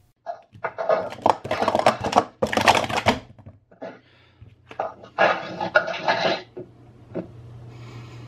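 Plastic sport-stacking cups clattering in rapid stacking runs: one of about three seconds, then a shorter one about five seconds in. A steady low hum comes in near the end.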